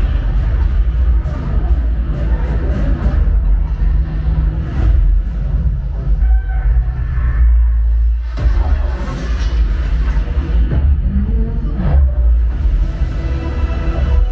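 Action-film soundtrack played loud through a Sonos Arc soundbar and Sonos Sub and picked up in the room: dramatic score music over a deep, continuous bass rumble, with several sharp impacts in the first few seconds and again near the end.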